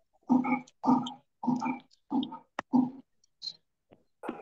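A person's voice heard over a video call, in about five short, evenly spaced bursts, with silence between them.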